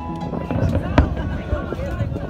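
Distant aerial fireworks going off over crowd chatter, with one sharp bang about a second in and a few softer pops around it.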